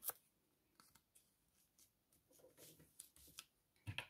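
Near silence with a few faint taps and rustles of a paper cutout being pressed down onto a glued notebook page, most of them a little past halfway.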